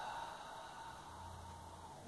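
Quiet room tone: a faint hiss that fades in the first second, then a faint low steady hum in the second half.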